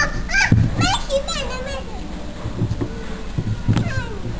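Toddlers' voices babbling and squealing as they play, with high pitches gliding up and down mostly in the first two seconds, and a few low thumps.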